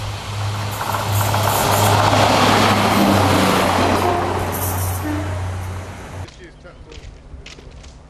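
Diesel multiple unit passing close by on the line: a steady low engine drone with wheel and rail noise, growing louder to a peak about two to three seconds in and then fading. It cuts off abruptly about six seconds in, leaving only faint outdoor background.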